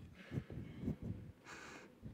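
Soft rustling and two short, low thumps: quiet handling and movement noise close to the microphone.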